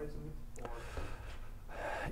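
Quiet room with a faint voice trailing off at the start, then a breath drawn in near the end just before speech resumes.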